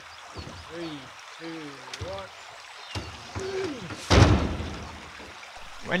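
A few short voice calls timing a two-person lift, then one loud, heavy thud about four seconds in as the oak post is heaved onto the trailer.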